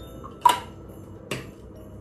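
Two sharp clicks, the first loud with a brief ring about half a second in, the second weaker about a second later.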